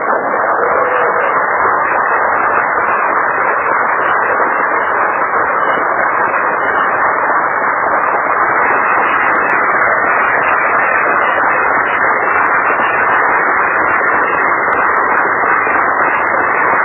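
Large audience applauding steadily in a long ovation. The sound is muffled, with its top end cut off.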